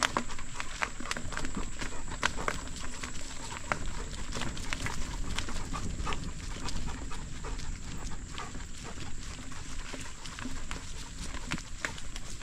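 A dog panting as it runs alongside a moving bicycle, over a low rumble and many short, irregular clicks and ticks from the ride. A steady thin high tone sits under it all.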